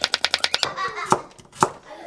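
Chef's knife slicing a carrot on a wooden cutting board: a quick run of chops, about eight a second, then two single chops spaced apart.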